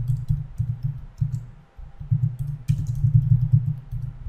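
Typing on a computer keyboard: an uneven run of keystrokes with a short pause a little before the middle.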